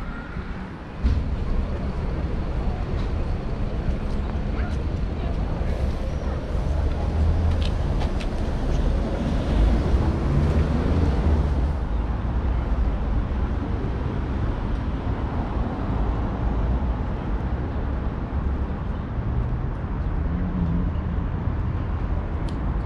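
Outdoor city ambience: a steady low rumble of traffic with faint voices of passers-by, changing character at cuts about a second in and near the middle.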